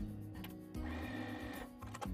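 Electric sewing machine stitching a seam through fabric strips for about a second in the middle, under steady background music.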